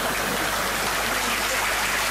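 Audience applauding: dense, even clapping at a steady level.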